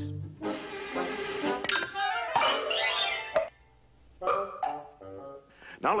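Cartoon soundtrack of a billiard shot gone wrong: music with the clack and knock of billiard balls and Donald Duck's squawking voice.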